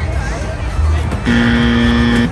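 A fairground basketball game's electronic buzzer sounds once, a steady pitched tone lasting about a second that starts just past halfway, over fairground music and crowd chatter.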